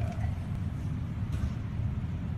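Steady low rumble of background machinery, with a faint light click about a second and a half in.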